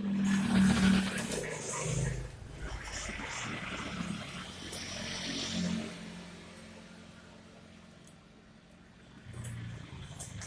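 A motor vehicle's engine running close by, loudest in the first second or two, then fading away about six seconds in.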